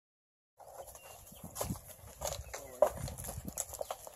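Footsteps and horse hooves on dry leaf litter and dirt, a string of uneven knocks and crunches that starts about half a second in, with faint indistinct voices.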